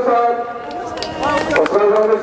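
People clapping by hand in scattered claps, under a man's long, drawn-out calls through a megaphone.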